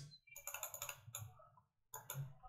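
A quick run of about six faint clicks of computer input, then a pause and one more click near the end: the selected heading's font size is being stepped down.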